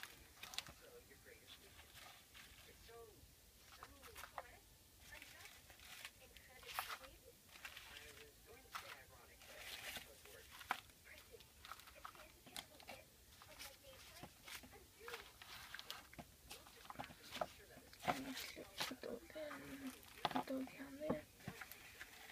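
Quiet crinkling and rustling of individually wrapped panty liners and pads being handled and packed back into a cardboard box, in scattered short crackles.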